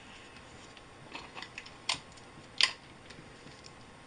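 Paper and sticky tape being handled and pressed onto a laptop screen: soft rustling and small clicks, then two sharp taps, the second the loudest.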